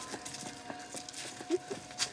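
Rustling and scuffling of clothing and feet as a group crowds around and grabs someone, with irregular small knocks and a short pitched sound about one and a half seconds in.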